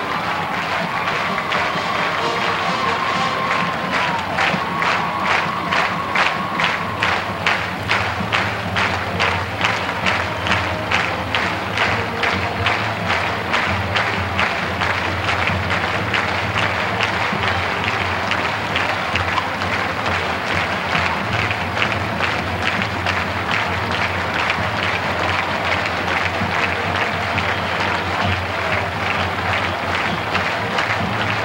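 Music with a steady beat of about two strokes a second over constant stadium crowd noise and applause; the beat is strongest in the first half and then fades into the crowd.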